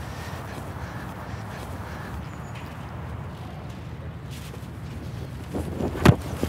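Wind rumbling steadily on the microphone on an open field, with a few soft thuds near the end.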